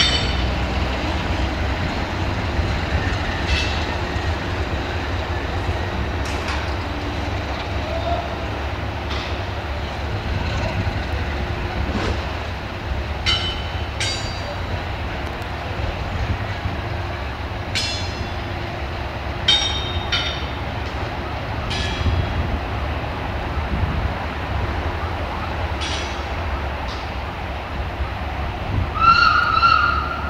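Class 060-DA diesel-electric locomotive's Sulzer 12LDA28 engine running with a steady low rumble as it pulls away, with scattered sharp metallic clicks every few seconds. Near the end come a few short high tones that rise and fall.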